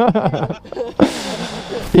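Brief laughter in conversation, with a short breathy burst about a second in, and a spoken "yeah" at the end.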